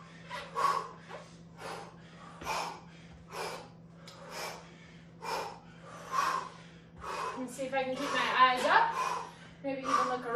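Quick, forceful breaths in and out, about one a second, from a person working through repeated reverse lunge twists and pacing the breath against fatigue. A voice sounds briefly near the end.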